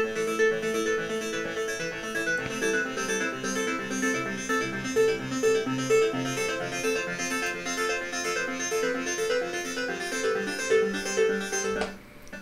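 Serum software synthesizer patch playing back from a 2016 MacBook Pro in Ableton Live, 40 duplicated tracks sounding a repeating pattern of synth notes at about three a second. It plays cleanly with no crackling or distortion: the laptop is coping with the load. Playback stops just before the end.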